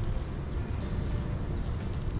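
Steady low rumble of beach ambience, wind and surf, with no distinct events.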